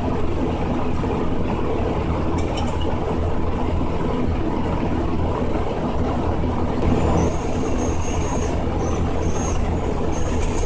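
A steady low mechanical rumble runs throughout. From about seven seconds in, a cordless drill runs in short spurts with a thin high whine, driving screws for a toilet spray-handle bracket.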